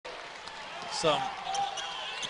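Basketball being dribbled on a hardwood gym floor, a few short sharp bounces over the steady murmur of the gym.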